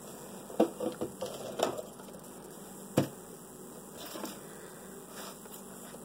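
Light handling noise as products are put down and picked up on a tabletop, with faint taps and one sharp knock about three seconds in.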